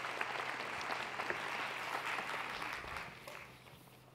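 Audience applauding, steady at first and then dying away over the last second or so.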